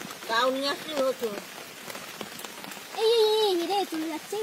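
Steady hiss of rain falling on shallow running water. Through it, human voices call out twice, briefly near the start and louder near the end.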